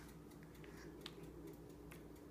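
Near silence: room tone with a faint steady hum and a few faint small clicks, one about a second in.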